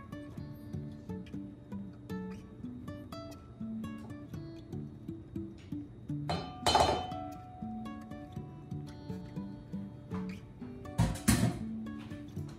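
Light plucked-guitar background music, with a few clinks and scrapes of a silicone spatula against a glass bowl as butter is scraped out, the loudest about six and a half seconds in and near the end.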